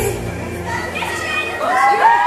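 Live female pop vocal with the band dropped out, the voice carrying alone over screaming audience noise, sliding up into a held note near the end.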